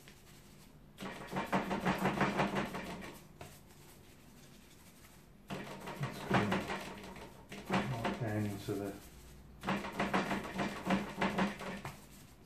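A voice in four short stretches of indistinct words, with pauses between them.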